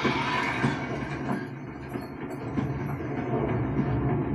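Film sound effects played back through a Valerion VisionMaster projector's built-in speakers: a dense, continuous mechanical noise with rattling, heavy in the low end.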